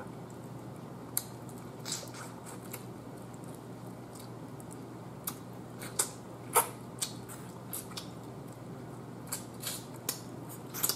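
A person eating turkey neck by hand: scattered short, wet mouth smacks and sucking clicks as meat is pulled off the bone, the sharpest about six and a half seconds in, over a steady low hum.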